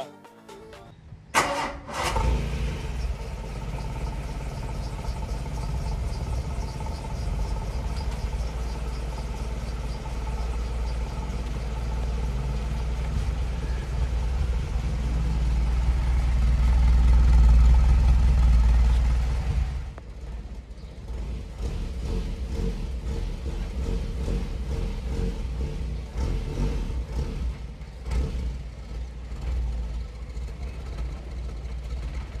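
Volkswagen Citi Golf (Mk1 Golf) engine cranked and started about two seconds in, then running steadily at the tailpipe. It grows louder for a few seconds before dropping off abruptly about two-thirds of the way through, after which it continues more quietly.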